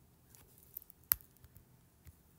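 Stylus or fingertip tapping on a tablet screen: a few light ticks, then one sharper click about a second in.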